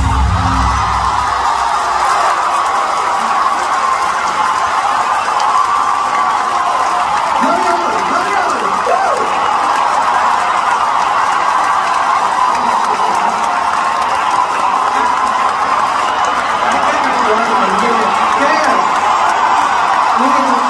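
Large arena crowd cheering and screaming steadily as a live song ends. The band's heavy bass cuts off about two seconds in, and a voice rises briefly over the cheering about eight seconds in.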